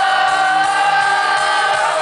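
Rock band playing live with many voices singing together on one long held note, recorded from the audience.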